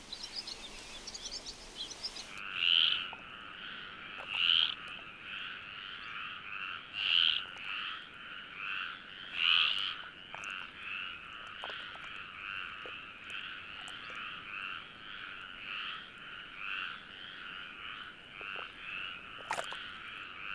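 Mating chorus of male stripeless tree frogs: many overlapping, rapidly repeated croaks that start about two seconds in, with a few louder calls from frogs close by.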